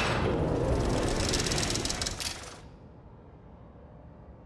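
Sound effect of a rolling number counter spinning: a dense, rapid rattle of clicks with a rushing hiss. It fades out about two and a half seconds in, leaving a low rumble.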